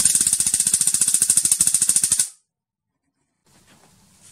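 Homemade high-voltage spark lighter firing: a rapid, even train of sharp electric snaps with a hissing crackle as sparks jump the gap. It cuts off suddenly after about two seconds.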